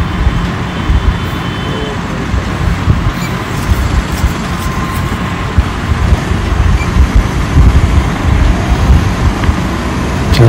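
Motorcycle engine running at low road speed under dense traffic and road noise, with wind rumbling and buffeting the microphone.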